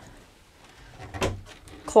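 A latched wooden wardrobe cabinet door in a travel-trailer bedroom being unlatched and pulled open: a few soft clicks and a light thump, starting about a second in.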